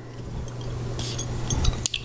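A long drawn sniff through the nose at a glass perfume bottle, followed by a few small clicks and clinks as the bottle and its cap are handled near the end.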